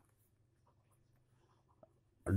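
Near silence, with faint scratching of a pencil writing on notebook paper.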